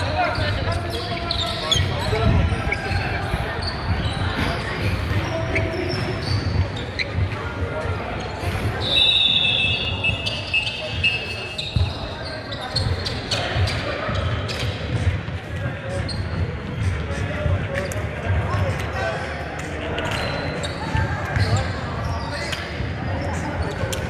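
Basketballs bouncing on a hardwood gym floor, with players' voices echoing in a large sports hall. A high steady tone lasting about two seconds comes about nine seconds in.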